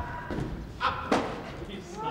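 Two dull thuds about a third of a second apart, over faint indistinct voices.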